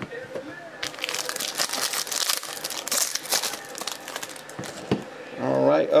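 Trading cards handled and shuffled by hand: a run of crinkling and rustling that starts about a second in and lasts about three and a half seconds.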